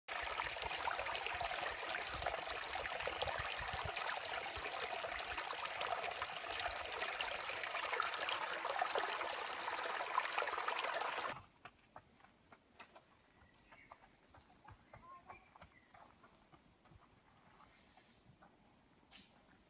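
Small, shallow woodland stream running and trickling over rocks. The sound cuts off suddenly about two-thirds of the way through, leaving near quiet with a few faint clicks.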